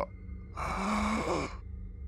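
A man's long, breathy sigh, about a second long, given as the exhausted, failing breath of a dying man.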